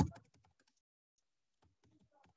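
Computer keyboard typing: a quick run of keystrokes, a pause of about a second, then a few fainter keystrokes near the end.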